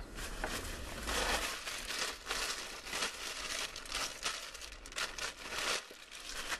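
Clothing rustling and crinkling close to the microphone, with scratchy handling noise as the handheld camera is jostled, while clothes are changed in a car. The scratching goes on unevenly throughout, with no rhythm.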